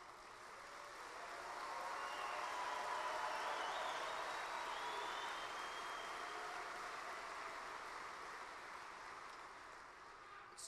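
A large audience applauding, with some cheering voices mixed in. It swells over the first few seconds, then slowly dies away.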